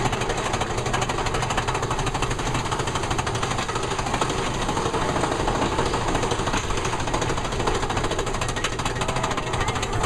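Mine-train roller coaster climbing a lift hill: the lift chain and anti-rollback make a rapid, steady clatter under the cars.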